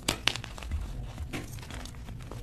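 Blocks of gym chalk crumbling as fingers break and squeeze them over loose chalk powder: two sharp crunches in the first moment, then softer, crackly crumbling.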